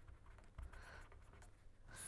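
Faint scratching of a pen writing on paper, over a low steady hum.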